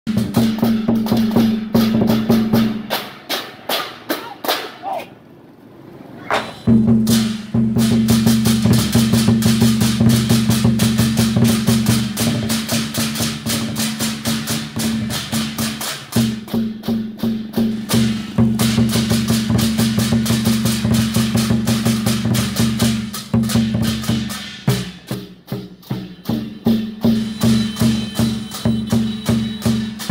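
Vietnamese lion dance percussion: large drums beaten in a fast, steady rhythm with handheld cymbals clashing on the beat. The drum drops out for a few seconds about three seconds in, and again briefly about three-quarters of the way through, leaving the cymbals.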